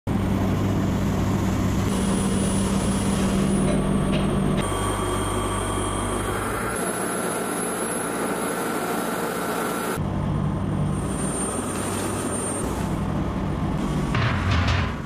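Steady workshop machinery noise: a constant low motor hum under a rushing hiss, its tone changing abruptly twice, about a third and about two thirds of the way through.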